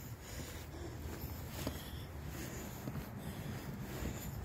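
Low, steady outdoor background rumble with no distinct events.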